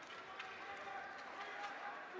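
Ice hockey rink sounds: indistinct spectator voices calling out over the rink's background noise, with a few sharp clicks of sticks and skates on the ice.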